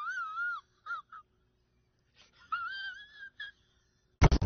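A man crying in a high-pitched whine: a wavering wail, two short sobs, then a second, longer wail that rises and holds, starting about two and a half seconds in.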